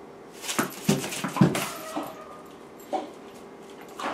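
Dog whining briefly, with a thin high whine about one and a half seconds in, amid several short clicks and knocks about half a second to three seconds in.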